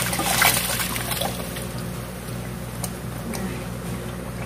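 Blended peanut sauce for Madura satay sizzling and bubbling in a wok as it is fried again, with a few short scrapes of the spatula against the metal. A steady low hum runs underneath.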